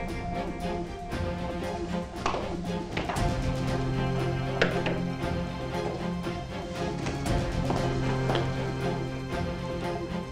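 Background music from a drama score: held low notes with occasional short percussive hits.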